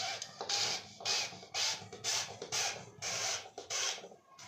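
A steel kitchen-sink strainer coupling is being turned by hand in the drain hole to tighten it. It makes a run of rasping scrapes, about two a second.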